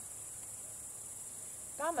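A steady, high-pitched chorus of crickets, running unbroken without pulses or pauses.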